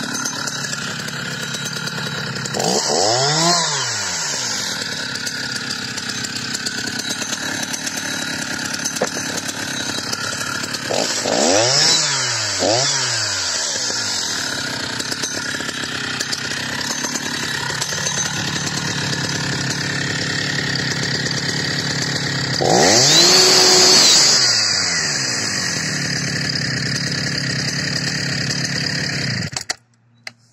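Husqvarna 480CD two-stroke chainsaw idling with the chain unloaded, revved up and back down once a few seconds in, and twice in quick succession around twelve seconds. It is held at high revs for about two seconds past the twenty-second mark, then switched off and stops just before the end.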